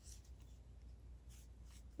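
Near silence, with a few faint, brief rustles of yarn being worked on wooden knitting needles.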